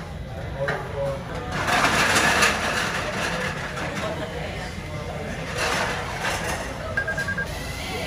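Background chatter and clatter of a busy restaurant, with a quick run of short electronic beeps near the end from the table's ordering touchscreen as it confirms the order.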